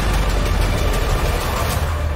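Military attack helicopter flying low, a loud, steady, deep rotor and engine rumble.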